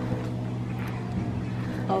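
A steady low machine hum made of several even tones, unchanging throughout; a woman's brief 'oh' comes right at the end.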